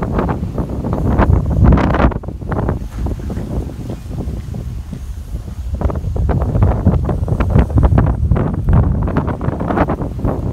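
Wind buffeting the microphone in a loud, gusty low rumble. It eases off a couple of seconds in and picks up again after about six seconds.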